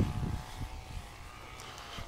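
Low, uneven rumble of wind on the microphone, strongest near the start, over a faint steady hum.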